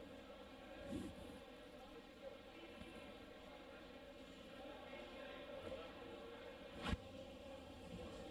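Faint room tone with a low steady hum and no engine running, broken by a single sharp knock about seven seconds in.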